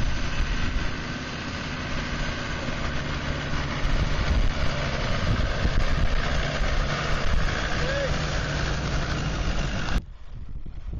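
Land Rover Defender's engine running steadily at low revs as the vehicle crawls slowly over rough, sloping grass.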